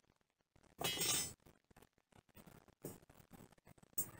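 Long bent metal bar shifted across a dirt floor, scraping and clinking briefly about a second in, with a smaller scrape near the end.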